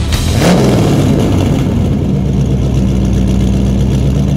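Car engine revving once about half a second in, then settling into a steady low rumble.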